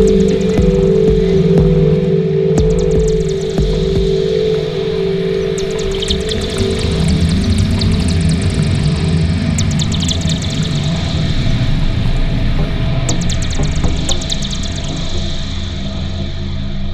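Ambient electronic music: held low drone tones that fade out about halfway through into a low rumble, with repeated clusters of rapid high clicking.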